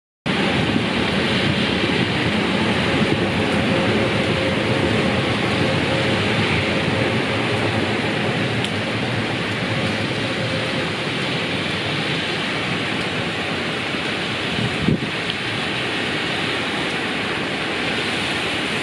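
Steady rain falling on a wooden balcony deck and glass railing panels, with one brief thump about three-quarters of the way through.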